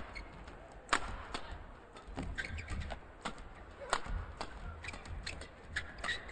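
Badminton rally: rackets hitting the shuttlecock in a string of sharp cracks, roughly one every half second to second, with players' shoes briefly squeaking on the court surface.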